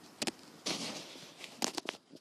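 Footsteps crunching through snow: a few crisp steps, with a quick cluster of them near the end.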